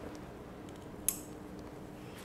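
Faint room tone with one short, sharp click about a second in, and a few fainter ticks just before it, from hands handling a waterproof cable coupler and a plastic-wrapped spool of network cable.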